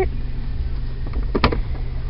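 Steady low rumble of background noise inside a car's cabin, with one sharp click about one and a half seconds in.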